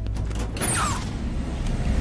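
An aircraft's side door being opened in flight: a rattle of clicks from the latch mechanism, then a falling whoosh about half a second in, as the wind rushes into the cabin over a steady low engine drone.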